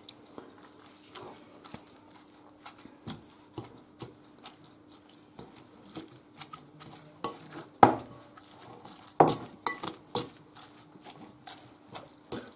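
A metal fork mashing canned tuna in a glass bowl: irregular small clinks and scrapes of the fork against the glass, with a few sharper clinks in the later part.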